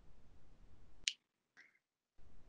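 Faint background hiss on a video-call line with one sharp click about a second in, followed by a brief faint blip.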